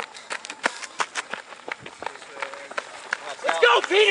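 Running footsteps of several cross-country runners on a gravel path: quick, irregular crunching steps. Near the end a man starts shouting.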